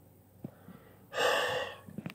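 A man's short, forceful breath, like a gasp, lasting about half a second just past the middle, after a faint click.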